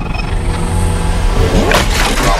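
Loud electronic intro music with a deep rumble, building to a rising whoosh near the end.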